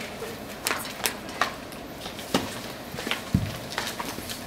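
Scattered footsteps and shuffling of people moving on a wooden floor in a quiet room, with a low thump about three and a half seconds in as a body goes down onto the floor.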